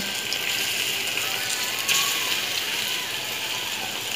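Cornstarch-coated firm tofu sizzling steadily in hot oil in a frying pan, the sizzle growing a little brighter about two seconds in.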